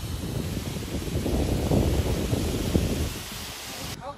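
Wind buffeting the microphone of a camera carried by a bungee jumper in free fall. It swells to a loud rush in the middle and eases off near the end.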